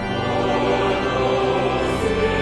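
A large choir singing sustained chords with an orchestra accompanying, in the reverberant space of a cathedral.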